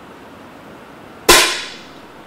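A 10 m air rifle firing a single shot: one sharp crack about a second and a quarter in, ringing away briefly.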